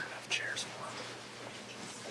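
Soft whispering and faint murmuring voices, with a short hissing whisper about half a second in.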